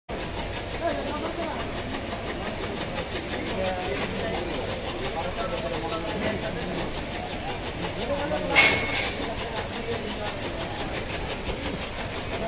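Indistinct voices over a steady, evenly repeating clatter, with one brief loud sharp sound about two-thirds of the way through.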